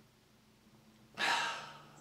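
A man sighing: one breathy exhale a little past halfway, after a second of near silence.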